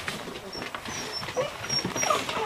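Six-week-old Bernese mountain dog puppies vocalising and scuffling as they play-fight, with a short whine about one and a half seconds in and a few faint, short high squeaks.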